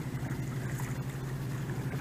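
A boat motor running with a low, steady hum.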